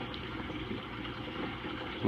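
Steady rush of flowing water from a running reef aquarium, with a faint low hum underneath.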